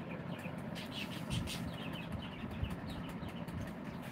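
Small birds chirping in short, repeated falling notes over steady background noise.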